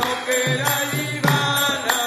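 Devotional kirtan: a mantra sung to a steady pulse, with a ringing metal strike about every 0.6 seconds keeping the beat.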